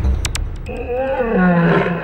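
Psytrance breakdown: the pounding kick-drum beat stops and, after a few hi-hat ticks, a roar-like sample with wavering, gliding pitch comes in over a steady high synth tone and begins to fade.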